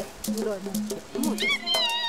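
A group of women singing, voices sliding up and down, then holding a long note from about three-quarters of the way in, over a steady percussive beat of about four strokes a second.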